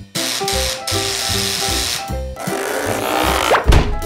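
Cartoon background music with a buzzing, rasping sound effect over it for the first two seconds, then a second noisy effect that ends in a quick rising sweep near the end.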